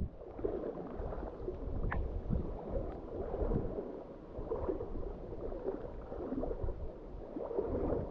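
Water sloshing and gurgling around a camera held at the water's surface by a swimmer, rising and falling unevenly.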